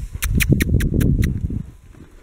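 Horses' hooves thudding on dirt and straw as they trot past close by. Over them comes a quick run of six sharp high clicks, about five a second, ending a little after a second in.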